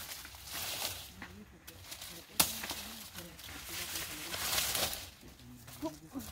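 Leaves and stalks of maize plants rustling in spells as they are pulled and cut at with a machete, with one sharp crack about two and a half seconds in.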